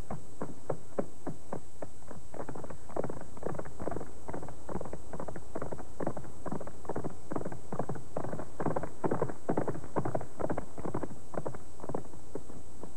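Horse hoofbeats on open ground: a quick, irregular run of hoof strikes, several a second, heaviest about three seconds in and again between about eight and eleven seconds.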